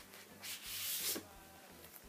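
A vinyl LP in a black paper inner sleeve being slid out of its shrink-wrapped album jacket: one brief rubbing slide, under a second long, that swells and fades.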